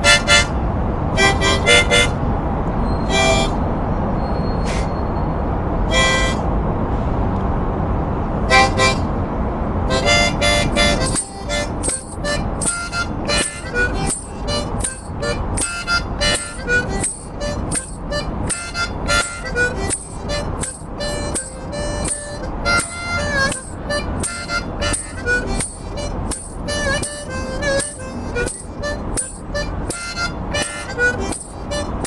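Solo harmonica played live, hands cupped around it. For the first ten seconds or so a few separate chords sound over a low steady rumble. From about eleven seconds in comes a quick, unbroken run of short notes.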